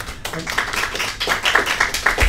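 Small audience applauding: many hands clapping at once, starting a moment in and growing louder.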